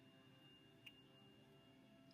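Near silence: room tone with a faint steady high tone and one small click a little under a second in.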